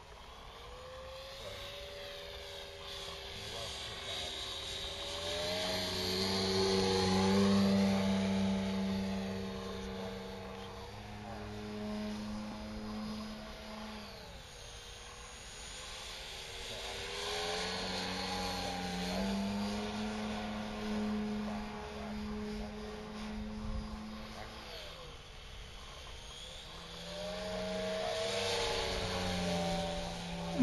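Engine of a radio-controlled model Pitts biplane running in flight. Its pitch glides up and down with throttle and passes, and it grows louder three times as the plane comes closer: around 7 to 8 seconds in, again near 20 seconds, and near the end.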